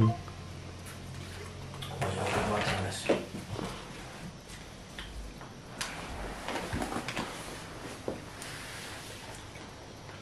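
A metal fork clicking and scraping in a plastic food container as someone eats, with handling noise and a few sharp clicks spread through.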